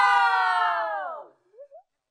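Several people shouting a drawn-out toast together ("cheers"), their voices held for about a second and then falling in pitch as they trail off.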